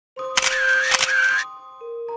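Edited-in transition sound effect: a short loud burst of hiss with two sharp clicks about half a second and one second in, over a held tone. Soft, steady chime-like music notes begin near the end.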